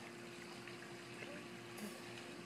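Faint water lapping and trickling in a swimming pool as a toddler wades on the shallow step, with a faint steady hum underneath.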